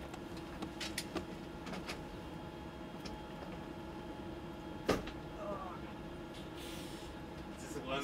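Steady hum of the space station module's ventilation fans, with a few faint ticks and one sharp tap about five seconds in.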